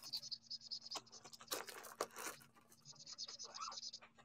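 Faint handling of paper and a plastic sleeve at a craft desk: a string of soft rustles and light taps, then a faint steady scratching for the last second or so.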